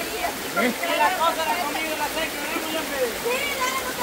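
Indistinct overlapping chatter from a group of people, over the steady rush of a shallow river flowing around them.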